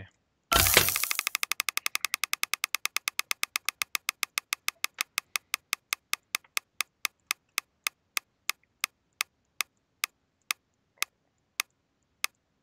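Lootie.com mystery-box spinner sound effect: a short burst as the spin starts, then rapid ticks as the item reels scroll past, slowing steadily to about one tick every two-thirds of a second as the reels wind down.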